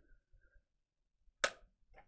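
A single sharp click about one and a half seconds in, otherwise quiet.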